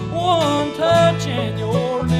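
Bluegrass gospel song: a man singing lead over a strummed mandolin and a bass guitar.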